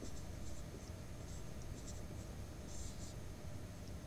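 Marker pen writing on a whiteboard: a few short, faint squeaky strokes, the longest just before three seconds in.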